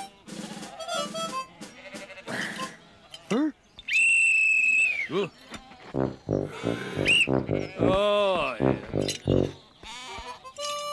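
Wordless cartoon character voices: short mumbling and grunting sounds, then a longer run of babbling that rises and falls in pitch in the second half. About four seconds in, a loud, steady high tone sounds for about a second and bends down as it ends.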